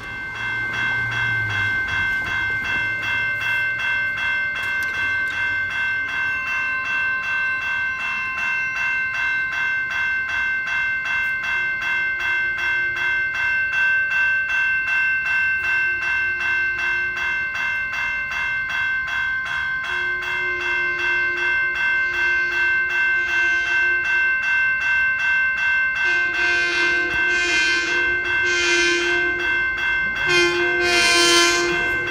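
Railroad grade-crossing bell ringing in a fast, even, steady pulse, starting as the crossing activates. The horn of an approaching Long Island Rail Road M7 electric train sounds in several blasts over it, short at first, then longer and louder toward the end.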